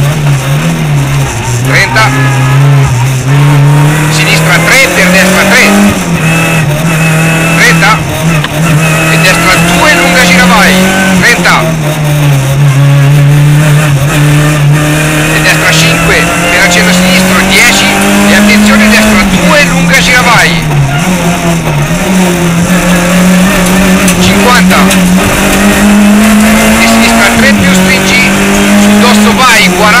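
Rally car engine heard from inside the cockpit, driven hard: its note repeatedly climbs, then drops back as the driver shifts and brakes for the next corner.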